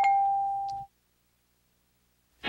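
A single steady electronic tone that fades for just under a second and then cuts off abruptly. It sounds over a videotape slate and is followed by dead silence.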